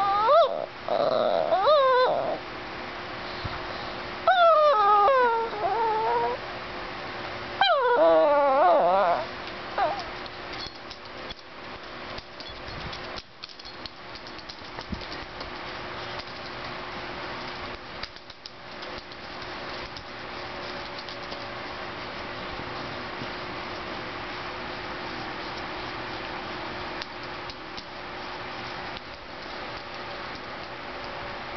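Greyhuahua (chihuahua–Italian greyhound cross) 'talking': three long whining calls that waver up and down in pitch over the first ten seconds. After that only a steady background hiss with a few small clicks.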